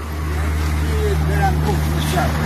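A motor vehicle's engine running on the street, a steady low drone, with faint voices over it.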